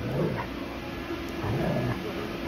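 Dogs growling low as a Bernese mountain dog and a standard poodle play-fight: a short growl right at the start and a longer one past the middle.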